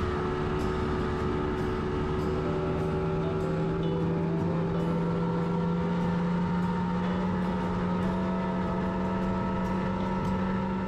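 A bass boat's outboard motor running steadily at speed.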